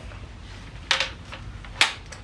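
Two sharp clicks about a second apart, with a fainter one between, from the SIG 556 rifle's folding, adjustable stock being worked by hand.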